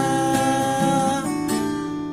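A man singing one long held note over a strummed acoustic guitar, with a fresh guitar strum about one and a half seconds in.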